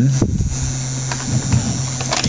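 Steady low electrical hum from a powered-on Anet A8 3D printer, with a few faint clicks.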